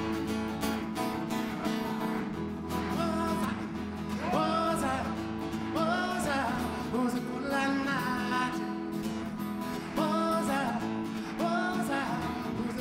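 Acoustic guitar played live with a man singing over it; the guitar runs alone for the first few seconds, then sung phrases come in and recur.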